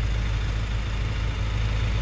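1969 Ford Capri 1600 XL's four-cylinder engine idling steadily.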